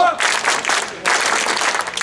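A crowd of festival bearers clapping their hands, in two bursts of about a second each with a short break between.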